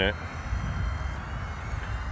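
Gusting wind buffeting the microphone: a low, steady rumble with no clear pitch.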